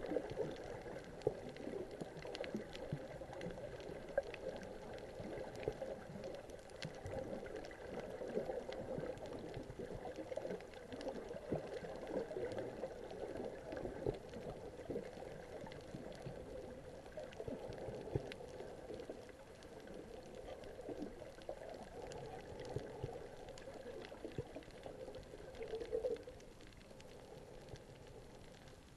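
Underwater water noise heard by a submerged camera: a steady, muffled churning and gurgling of water with many faint scattered clicks, easing off somewhat near the end.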